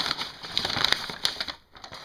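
Brown packing paper crinkling and rustling as hands rummage through it, with many small crackles, dying away about a second and a half in.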